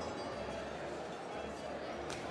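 Indistinct chatter of many guests talking at once in a large reverberant banquet hall.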